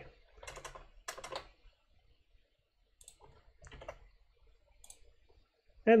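A few faint, scattered computer keyboard keystrokes and clicks, spaced about a second apart.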